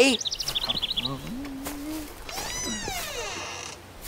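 Quick high chirps, like birdsong, in the first second, then a voice humming a rising 'hmm'. Near the end comes a squeaky creak falling in pitch as the wooden cage gate swings shut.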